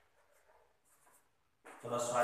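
Chalk on a blackboard in faint short scratching strokes, then a man's voice starts loudly near the end.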